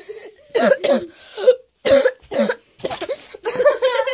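A person's voice in several short bursts without words, which sound like coughing.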